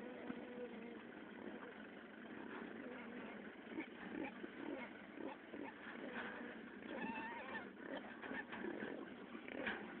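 Pigs in a group, sows and piglets, making short grunts and squeals scattered throughout, with a clearer higher squeal about seven seconds in.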